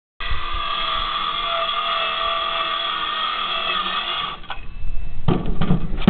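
Handheld circular saw running steadily through a sheet of plywood, its whine shifting slightly under load before it cuts off about four seconds in. Louder knocks and thumps of handling follow near the end.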